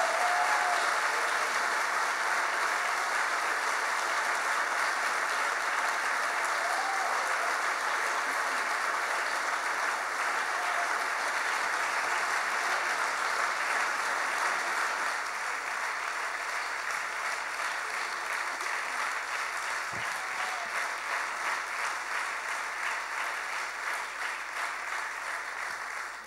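A large audience applauding steadily, the clapping easing off a little over the last ten seconds or so.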